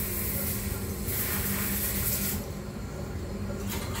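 Water spraying from a handheld shower sprayer into a plastic nursery pot, washing rice hulls off a small adenium's roots. The hiss fades about two and a half seconds in, leaving a steady low hum.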